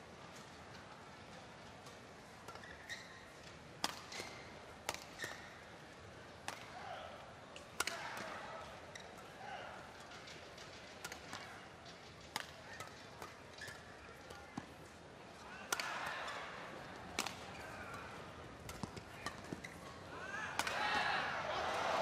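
Badminton rally: rackets striking the shuttlecock in sharp cracks about a second apart, over low arena crowd noise. The crowd noise swells near the end as the rally finishes.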